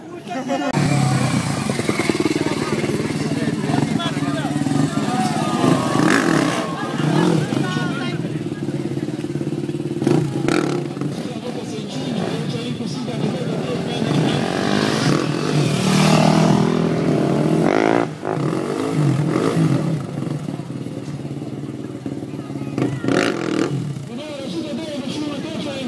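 Off-road motorcycle engine revving up and down as it is ridden over log and tyre obstacles, with voices over it.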